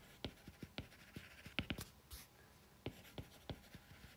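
A stylus tip tapping and sliding on a tablet's glass screen during handwriting: a faint run of light, irregular clicks with a short scratch of the nib in the middle.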